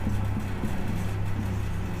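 Steady low hum with faint scratches of a marker writing on a whiteboard.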